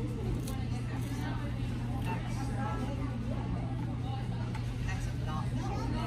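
Restaurant dining-room background: other diners talking indistinctly over a steady low hum.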